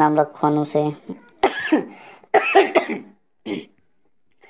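Brief speech, then a person coughing twice, about a second apart, with a short, fainter throat sound shortly after.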